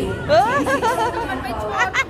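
People talking; one voice slides sharply up in pitch about a third of a second in.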